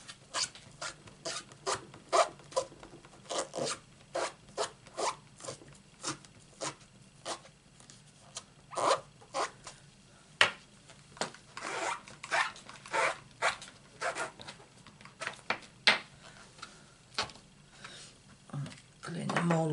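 A hand rubbing or scrubbing something on a surface in short, irregular strokes, about one or two a second.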